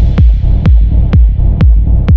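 Electronic dance track: a four-on-the-floor kick drum at about two beats a second, each kick falling in pitch into a steady low bass, under a high hiss that falls away.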